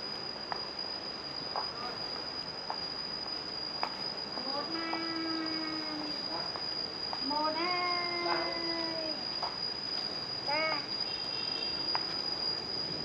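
Insects droning steadily in the trees at one high pitch, with faint scattered clicks. Two long, drawn-out distant calls come about five and eight seconds in, each lasting one and a half to two seconds.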